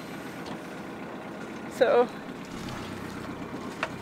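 Sailboat's inboard engine idling steadily, a low even running sound.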